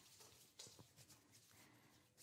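Near silence: room tone, with faint soft sounds of two people rubbing hand sanitizer into their hands.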